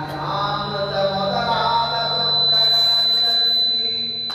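A man chanting a devotional verse into a microphone in long, held, melodic notes, with a steady high-pitched whine running underneath.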